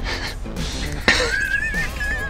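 Two men laughing hard. About a second in, one breaks into a high, wavering, wheezing laugh.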